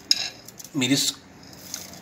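A metal utensil clinks sharply against a cooking pot right at the start, in the middle of cooking.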